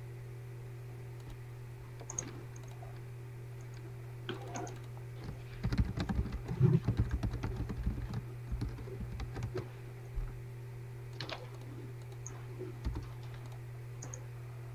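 Typing on a computer keyboard: a fast run of keystrokes through the middle, with a few scattered single key presses before and after, over a steady low hum.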